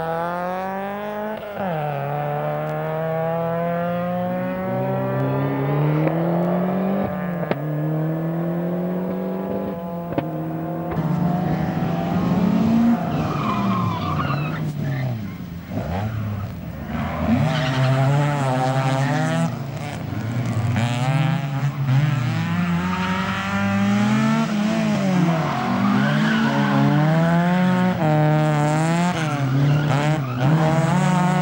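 Vauxhall Astra GSi Group N rally car's four-cylinder engine driven hard, its note climbing repeatedly under acceleration and dropping sharply at each gear change and lift for a corner.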